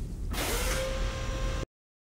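Sound effects from a science-fiction TV episode's soundtrack: a low hum, then about a third of a second in a loud hissing rush with a steady tone in it. It cuts off abruptly about one and a half seconds in, where the episode audio stops.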